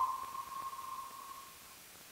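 A single ringing tone, sharply struck and fading out over about a second and a half, over a steady faint hiss.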